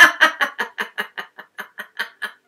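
A woman laughing: a long run of quick "ha" pulses, about six a second, growing fainter and trailing off near the end.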